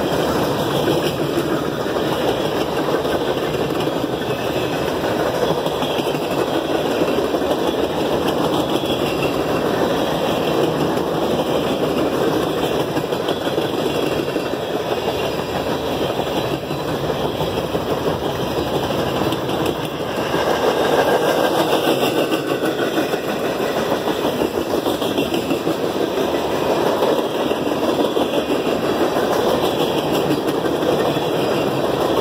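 Freight cars of a passing train rolling by, a steady rumble of steel wheels on rail that swells a little about two-thirds of the way through.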